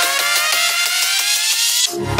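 Electronic dance music build-up: a synth tone rising steadily in pitch over a beat, cutting off suddenly near the end.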